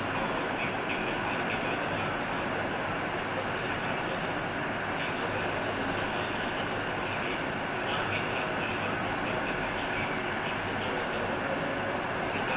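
Steady background noise at an even level, with faint voices in it.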